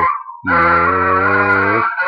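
A man singing: a falling slide trails off at the start, then he holds one steady note for about a second and a half, which breaks off near the end.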